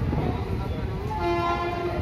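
Low rumble of passenger coaches rolling slowly past a platform as the train departs; a little over a second in, a train horn sounds one steady note that runs to the end.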